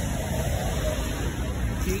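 Steady low rumble of street traffic.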